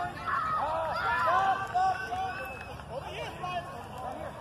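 Voices talking and calling out over a field, high-pitched voices among them, with a background hubbub of chatter.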